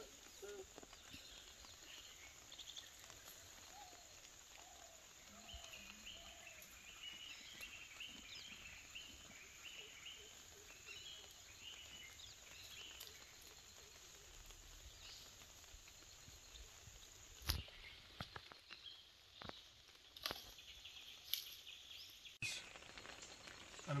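Quiet outdoor ambience with faint bird chirps in the first half, then a few sharp clicks near the end.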